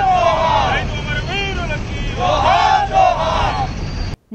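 A group of protesters chanting slogans together in rhythm: a single voice calls out and the crowd shouts back, over a low steady rumble.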